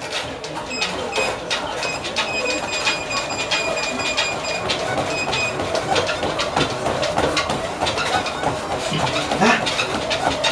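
A treadmill running, feet pounding the moving belt in a steady, rapid rhythm. A thin high whine comes and goes during the first half.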